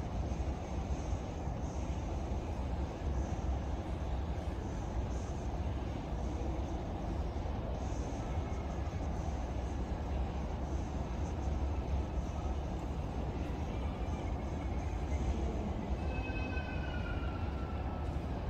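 Steady outdoor background rumble, heaviest in the low end, with no event standing out. Near the end a faint high call falls slightly in pitch.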